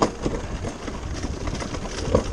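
Summer toboggan sled running fast down a stainless steel trough track, with a steady rumble and scattered rattles and knocks.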